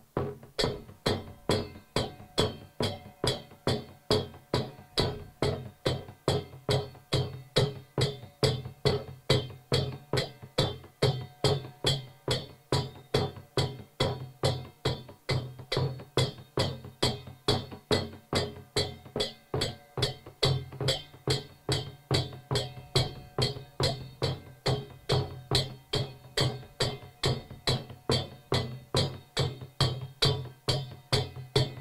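Nepali double-headed barrel drum beaten by hand in a steady, even rhythm of about two to three strokes a second: the beat for a Sakela dance.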